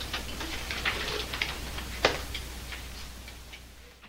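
Pages of a paperback catalog being leafed through by hand: a string of soft paper rustles and small clicks, with one sharper paper snap about two seconds in, fading near the end. A steady low hum runs underneath.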